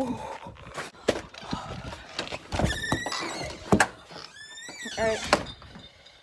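A door squeaking as it is worked, with two drawn-out squeals and several knocks and thuds as it opens and shuts.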